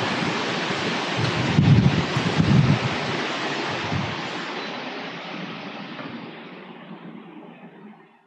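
Steady rushing noise of data-centre air conditioning and equipment cooling, with a louder low rumble of airflow on the microphone about two seconds in. The noise fades steadily over the last four seconds as a door is passed and left behind.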